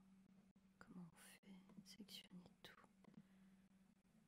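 Near silence: a person whispering or muttering faintly in a few short bits, over a low steady hum.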